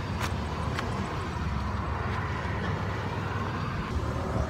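Steady low rumble of a motor vehicle running close by, with outdoor street noise.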